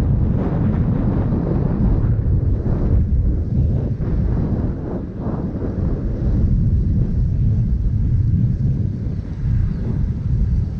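Heavy wind buffeting on a chest-mounted GoPro's microphone from a bike coasting fast downhill: a loud, steady low rumble that eases briefly a few times.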